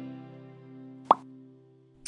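A guitar chord ringing out and fading, with one short, sharp rising pop sound effect about a second in, the loudest sound. The pop is the click effect of an animated subscribe button.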